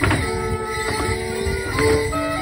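Live Morris dance tune played with long held notes, while the dancers' feet land on the stage and their leg bells jingle, with a sharp strike at the start and another near the end.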